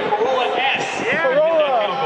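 Speech only: a man announcing through a stadium public-address system.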